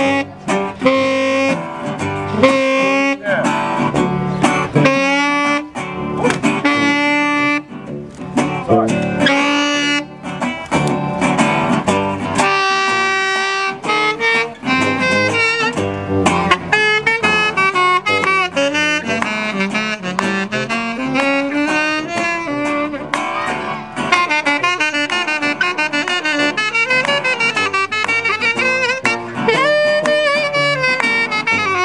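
Small jazz-blues band playing an instrumental break: a saxophone solo over a strummed acoustic guitar and a tuba bass line.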